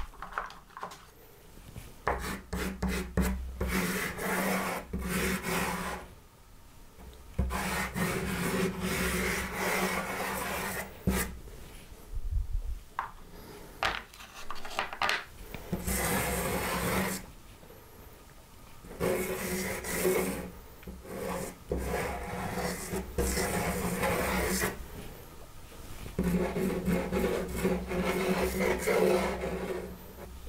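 Pastel stick rubbing and scraping across pastel paper taped to a board, in runs of quick strokes broken by several pauses of a second or two.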